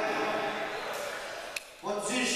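Indistinct crowd chatter echoing in a sports hall. It fades gradually, with a sharp click about one and a half seconds in and a brief drop almost to quiet near the end.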